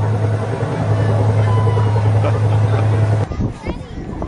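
An amusement ride's machinery runs with a steady low hum, with faint voices over it. It cuts off abruptly about three seconds in, giving way to outdoor crowd chatter.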